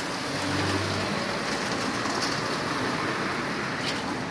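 Steady rushing noise of a heavy vehicle passing close by, with a low hum in the first second.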